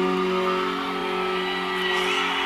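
Live rock band on stage: an electric guitar chord held and ringing out, its notes sustaining steadily and slowly fading.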